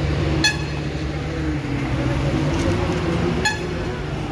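Heavy truck engines running with a steady low rumble, and two short vehicle-horn toots, one about half a second in and one near the end.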